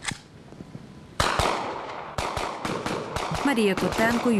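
Rifles firing blank rounds in a mock assault: one loud shot about a second in, then a rapid string of shots from about two seconds on.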